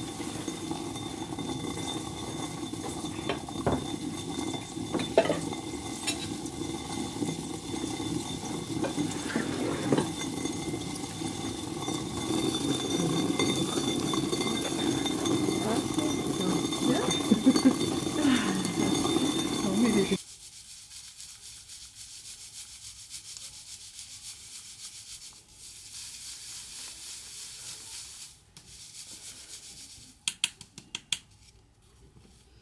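Hand-turned rotary stone quern grinding grain: a steady, gritty rumble of the upper stone rubbing round on the lower one, with occasional small knocks. It stops abruptly about two-thirds of the way through, giving way to a much quieter sound.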